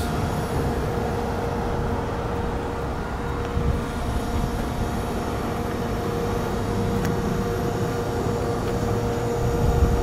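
Honda CR-V idling just after being started: a steady low rumble with a faint constant hum.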